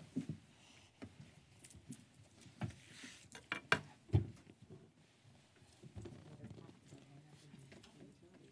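Faint sounds of people moving about in a hall under low murmured voices, with a few sharp knocks and thumps around the middle, the loudest two about half a second apart.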